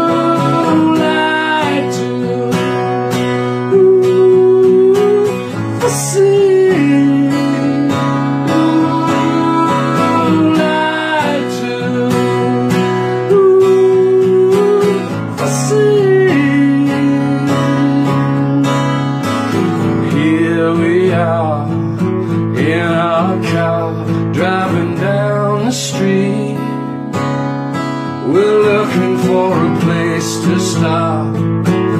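A man singing to his own strummed acoustic guitar, his voice holding long notes over the steady chords.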